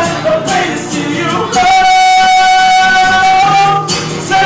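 A man singing live over a strummed acoustic guitar, holding one long note through the second half.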